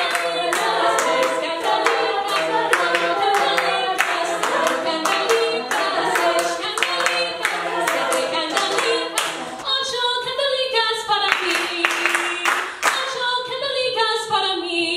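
A cappella group singing, a female soloist on a microphone over the others' backing voices, with group members clapping hands in a steady beat. The clapping stops about ten seconds in and the singing carries on.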